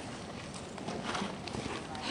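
Hoofbeats of a horse moving over the dirt footing of an indoor arena: a few soft, uneven hoof strikes.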